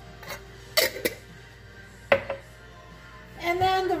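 A spoon clinking against a mixing bowl of cornbread batter, four short knocks, the loudest a little under a second in and about two seconds in. A woman starts speaking near the end, over faint background music.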